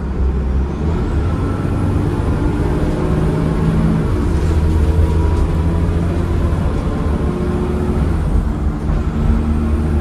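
Cummins ISCe 8.3-litre diesel engine and ZF Ecomat five-speed automatic gearbox of a Transbus ALX400 Trident bus, heard from inside the saloon while under way, running steadily with a thin whine above the engine note. The engine note changes pitch about four seconds in.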